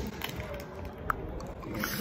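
Faint biting and chewing of a thin snack stick held close to the microphone, with one small click about a second in. The snack is not crispy, so there is hardly any crunch to hear.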